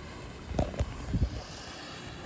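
A lit smoke bomb tossed into a brick fire pit, landing among the ash and debris: two short, sharp clicks and a few dull thumps within the first second and a half.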